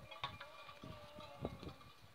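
Faint bell-like ringing, steady thin tones, heard as a herd of cattle is driven along, with a few low thumps in the second half.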